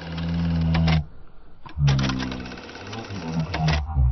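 Video-editor transition sound effect: two bursts of rapid, even mechanical clicking over a low tone, the first ending about a second in and the second running from just under two seconds in to near the end.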